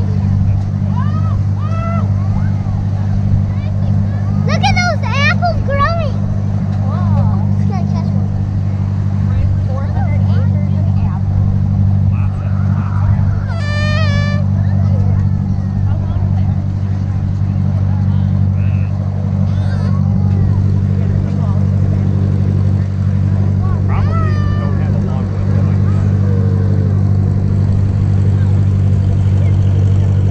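Farm tractor engine running at a steady pace as it tows a hay wagon, a constant low drone. A few short, high voices call out over it, around five seconds in, near the middle and again about twenty-four seconds in.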